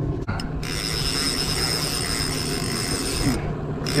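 Trolling reel's clicker (line-out alarm) ratcheting rapidly as a hooked steelhead pulls line off the reel, with a brief stop near the end before it starts again. The steady hum of a small outboard motor runs beneath it.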